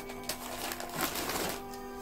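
Clear plastic bags crinkling as the plush dolls inside are handled, a little louder around the middle. Quiet background music with sustained notes runs underneath.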